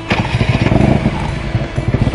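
1997 Harley-Davidson Road King's 80-cubic-inch Evolution V-twin running through its true dual exhaust, a rapid string of exhaust pulses.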